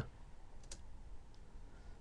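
A single faint click about two-thirds of a second in, against quiet room tone: the computer click that advances the presentation slide to its next item.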